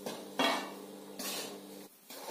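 A spatula scraping and stirring dry wheat flour around a large steel kadhai: two scrapes about a second apart, over a faint steady hum. The flour is being dry-roasted without ghee and kept moving so it does not stick and burn.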